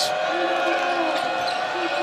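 Game sound from a basketball arena: a basketball being dribbled on a hardwood court over the steady murmur and voices of the crowd.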